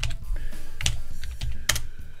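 Computer keyboard typing: a few separate key clicks, the sharpest a little under a second in and near the end, each with a low thud from the desk.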